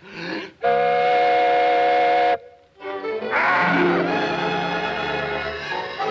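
A loud, steady cartoon finger-whistle, several pitches sounding at once like a steam whistle, held for about a second and a half and cut off sharply. The orchestral score comes in about three seconds in.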